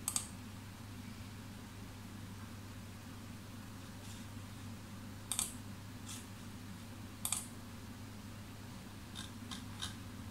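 Computer keyboard and mouse clicks: a quick pair at the start, another pair about five and a half seconds in, one more a little after seven seconds, and a few faint taps near the end, over a quiet steady low hum.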